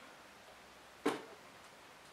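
Quiet room tone with a single short handling noise from a power cord about a second in.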